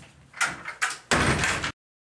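Restroom stall door being pulled shut: two short knocks, then a loud slam just over a second in. The sound cuts off abruptly soon after.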